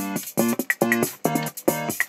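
Suzuki Omnichord playing a looped pattern of plucked-sounding chords, some held and some short and choppy, with small sharp ticks between them.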